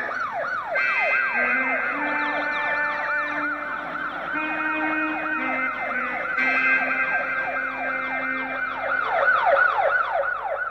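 Siren-style wail with quick rising-and-falling sweeps, about three a second, layered over held synthesizer chords and a low note that steps between pitches: the intro of a hip-hop track built on a siren sound.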